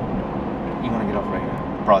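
Steady road and engine noise inside the cabin of a car driving at highway speed. A voice says "Broad" near the end.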